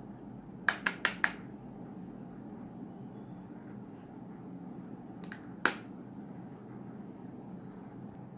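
Sharp clicks of makeup tools being handled: four in quick succession about a second in, and one more a little before six seconds, over a steady low hum.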